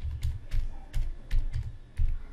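Computer keyboard being typed on: about six separate keystrokes at an uneven, unhurried pace, each a short click with a dull thud.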